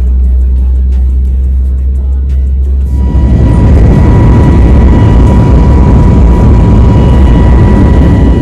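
Airliner jet engines heard from inside the cabin during takeoff: a deep, steady rumble, then about three seconds in a louder, fuller roar with a steady high whine running through it.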